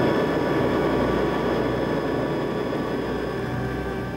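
Steady aircraft engine drone: a dense rumble with a few steady tones over it, slowly fading.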